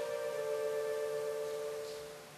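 Chromatic button accordion holding a long, soft sustained note that fades away near the end.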